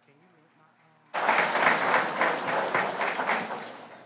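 Audience applause that starts abruptly about a second in and then slowly fades.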